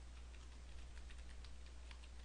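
Faint keystrokes on a computer keyboard, a quick irregular run of key clicks as a word is typed, over a low steady hum.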